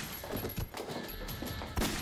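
Dramatic film score music over staged fight sound effects: a couple of sharp hits, the loudest near the end.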